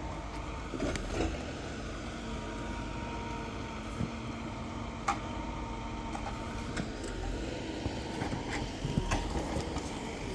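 Vimek 870 forwarder running steadily while its hydraulic crane swings the grapple out, with a faint steady whine and a few sharp clicks from the crane.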